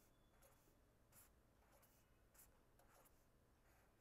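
Near silence, with faint scratching of a pen drawing short lines on paper, a few separate strokes.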